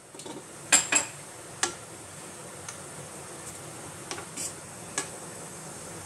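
Kitchen utensils clinking and knocking against a kadai as butter is worked into the oil: a few sharp clinks in the first two seconds and two more near the end, over a faint steady hiss.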